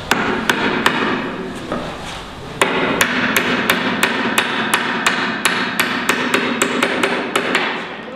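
Hammer blows on a timber brace: a few strikes, a pause, then a steady run of about three to four sharp blows a second that stops just before the end.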